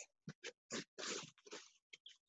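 A man's short, sharp breaths pushed out with a quick series of punches: about six faint, breathy bursts in two seconds.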